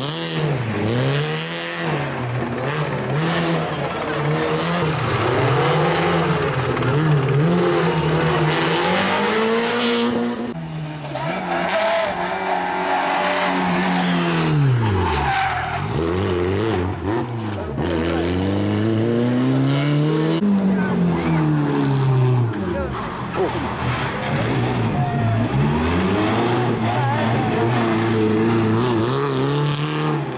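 Renault Clio rally car's engine revving hard, its pitch climbing through the gears and falling away again and again as it brakes and accelerates out of tight corners, with tyres skidding as the car slides.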